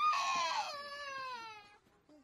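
A young child crying: one long wail that starts high, slides down in pitch and fades out about a second and a half in.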